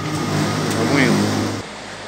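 Steady hum and rush of a ventilation fan, which cuts off abruptly about one and a half seconds in. Faint voices sound underneath.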